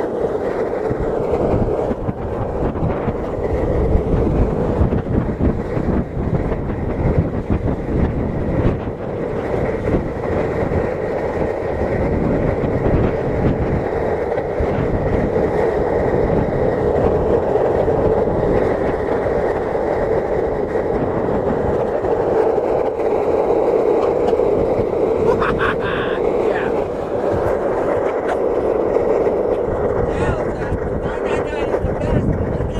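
Skateboard wheels rolling on rough, cracked asphalt: a steady, loud rumble.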